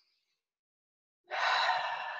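A woman's long, audible breath through the mouth, starting about a second and a half in, strongest at once and then fading.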